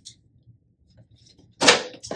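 A cardboard box insert tossed down onto a desk: one sharp slap about one and a half seconds in.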